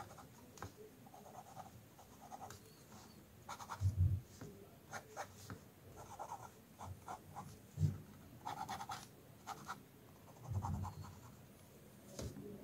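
Sakura Pigma Micron fineliner pen inking short strokes on sketchbook paper: a run of light, scratchy pen strokes. A few soft low thumps come about four, eight and ten and a half seconds in.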